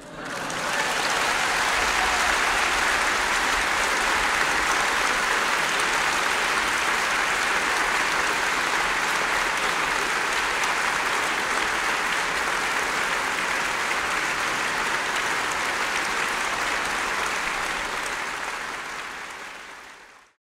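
Large audience applauding in a concert hall: the clapping swells up within the first second, holds steady, and fades out near the end.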